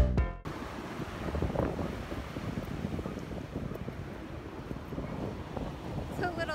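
Ocean surf washing onto a sandy beach, a steady noise with wind buffeting the microphone. A music track cuts off suddenly in the first half second.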